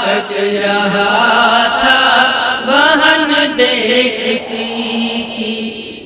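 Voices chanting a nauha, a Shia Muharram lament, in a mournful melody over a steady low drone. The chanting eases off near the end.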